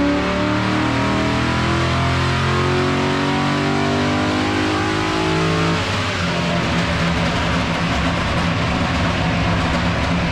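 Holden Commodore VE SS ute's 6.0-litre LS V8 running hard on a chassis dyno through loud race pipes. The steady engine note gives way about six seconds in to a rougher, noisier sound.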